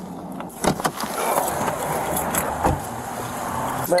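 Roadside traffic noise picked up on a police body camera, with a few sharp knocks as the officer gets out of a patrol car.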